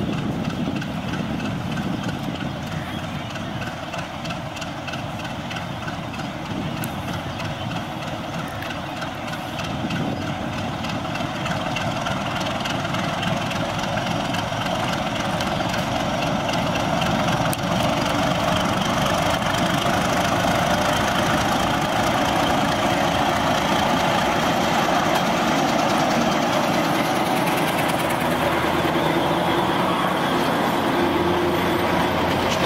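Diesel locomotive of a Bangladesh Railway commuter train moving slowly at low power, its engine running steadily and growing louder through the second half as it comes close and passes.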